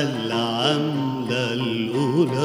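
A man singing a long, ornamented Arabic vocal line, its pitch wavering and sliding, accompanied by an oud.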